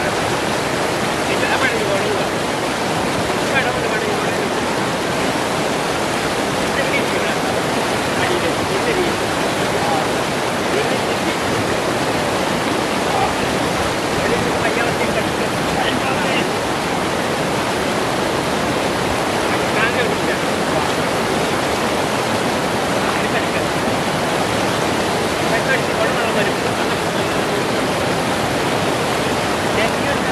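River rapids: white water rushing steadily over rocks in a loud, even noise.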